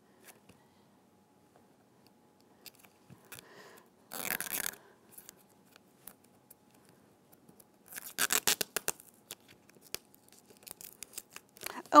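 Hand linoleum-cutting gouge scraping and cutting into contact paper on mat board: short scraping bursts about four seconds in and again around eight seconds, with faint scratches between.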